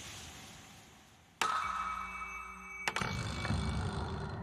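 Cartoon sound effects for a hand-cranked lottery drum giving out its draws. A sharp click comes about a second and a half in, followed by a steady ringing tone. A second click with more ringing follows near the end.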